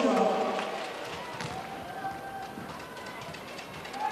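Indoor arena ambience from a volleyball broadcast: a voice in the first half-second, then a low, steady crowd hubbub with faint music.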